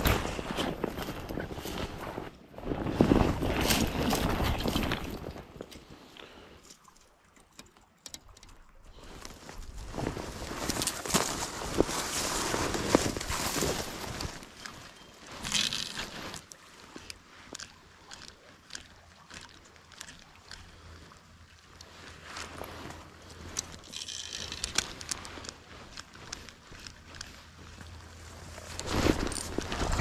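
Rustling and crunching of dry brush and leaf litter underfoot, in two long bursts during the first half, then a quieter stretch of faint creek water with scattered small clicks.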